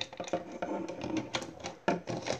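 Hard plastic parts of a Lego Bionicle-style figure clicking and rattling as its legs are adjusted and its feet set down on a Lego baseplate: a run of small irregular clicks, with a sharper knock near the end.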